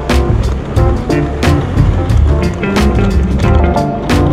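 Background music with a steady drum beat over a bass line.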